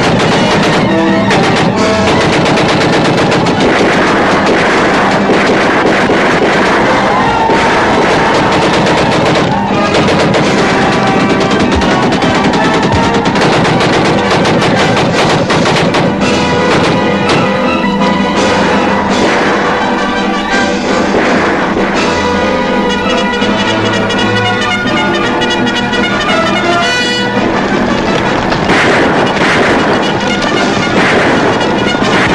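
Rapid, continuous firing of a hand-cranked Gatling gun, mixed with orchestral film score music.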